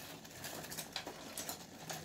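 Water at a rolling boil in a stainless steel pot on a gas burner, bubbling with many small irregular pops as a conch is blanched in it.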